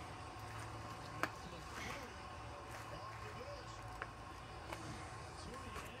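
A quiet room with a low hum and a few faint, sharp clicks, one about a second in and two more later, from a lidded plastic drink cup being handled.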